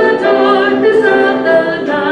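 A woman singing solo into a microphone, holding long sustained notes.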